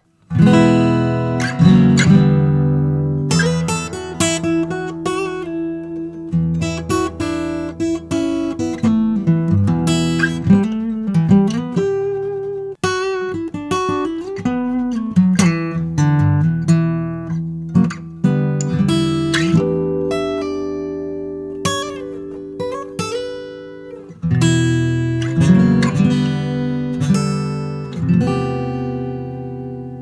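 PRS T50E acoustic guitar played solo, a continuous run of picked notes and chords, recorded through a stereo pair of microphones set too close together, giving a slightly more phasey sound.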